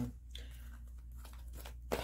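Tarot cards and a card deck being handled: soft rustling and a few light clicks, the sharpest near the end.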